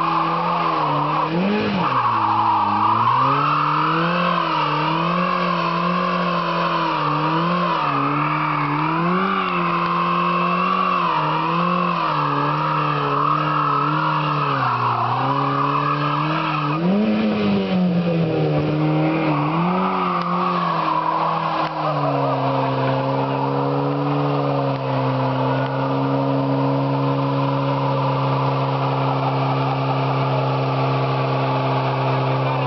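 Nissan 240SX (S14) doing a burnout, its engine held at high revs and rising and falling as the throttle is worked, with the rear tyres spinning on the pavement. From about 22 seconds in, the engine holds a steady pitch.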